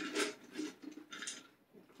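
Australian labradoodle puppies eating dry kibble from a metal bowl: scattered soft crunches and clicks, dying away to near quiet about a second and a half in.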